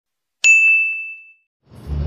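Notification-bell 'ding' sound effect: one bright ring that fades away over about a second.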